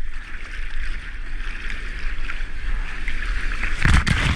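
Choppy seawater hissing and sloshing around a surfboard as it is paddled out, heard from a camera just above the water, over a steady low rumble. Near the end comes a loud, sudden splash as water washes over the camera.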